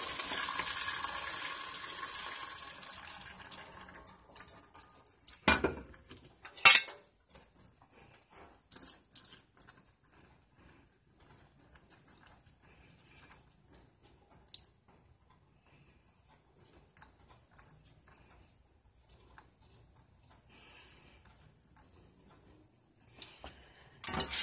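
Hot pasta water pouring from a pot through a metal strainer into a stainless steel sink, tapering off over about four seconds as the rotini drains. Then two loud clanks of metal cookware, followed by faint drips and small clinks.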